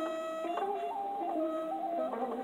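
Traditional Korean court-style music: a slow melody of long held notes stepping from pitch to pitch, played on a transverse bamboo flute over a plucked zither, with an occasional sharp plucked note.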